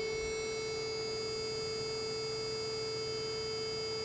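Roland JX-3P synthesizer with the Kiwi-3P upgrade sounding one steady held note at A 440 Hz, both oscillators set to square waves. Oscillator 2 is being trimmed to match oscillator 1 and cancel the beating between them, and the level stays even.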